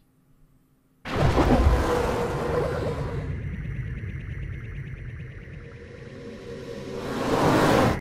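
Logo sting: music with a sound effect that starts suddenly about a second in, fades slowly, and swells again near the end.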